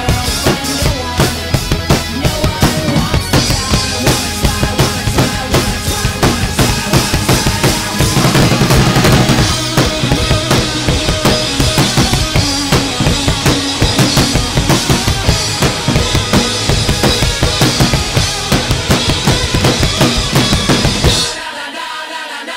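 Miked acoustic drum kit with Sabian cymbals played hard along with the recorded rock song: fast kick and snare strokes under a constant cymbal wash. Near the end the drums and low end cut out suddenly for a short break.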